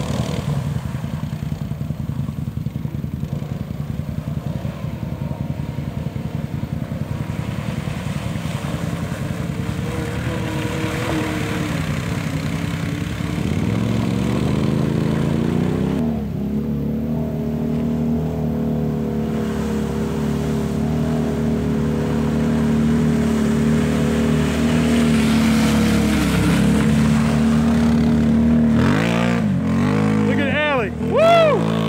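ATV engines running and revving as the quads churn through deep mud. A low, throbbing engine note runs for the first dozen seconds, then an engine revs up about halfway through and holds high revs steadily, dipping briefly near the end.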